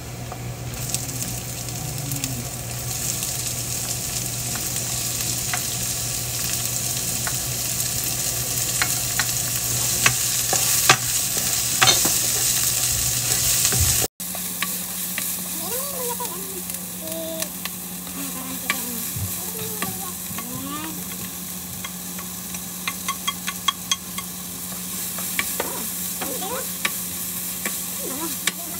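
Minced garlic, and then chopped onion, sizzling in oil in a nonstick frying pan, with a steady low hum underneath. A spatula scrapes and taps against the pan as it is stirred, with a cluster of sharp taps shortly before halfway and more near the end. The sound drops out for an instant about halfway through.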